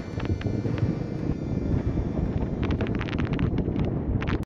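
Wind rushing over a helmet-mounted microphone on a moving motorcycle, a low steady buffeting, with a quick run of light clicks in the last second or so.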